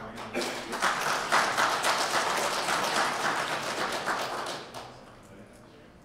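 Audience applauding: a burst of clapping that starts just after the beginning, holds for about four seconds, and dies away about five seconds in.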